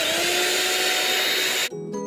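Hamilton Beach electric hand mixer running at speed with a steady whine as it beats egg whites in a bowl. It cuts off suddenly near the end and background music takes over.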